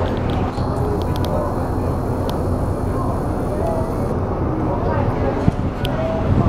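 Outdoor ambience: a steady low rumble with faint, indistinct voices of people nearby and a few light clicks.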